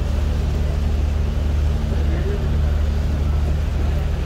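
Steady low drone of a cruise boat's engine under way, with the rush of water from its wake.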